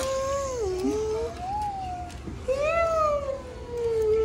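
A young child's long, wavering, wordless vocalizing, the pitch sliding up and down, in two long drawn-out sounds with a short break a little over two seconds in.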